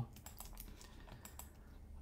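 Faint, irregular clicking of a computer keyboard and mouse.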